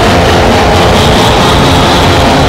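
Raw black metal playing loud: a dense, fuzzy wall of distorted guitar and noise with sustained notes running through it.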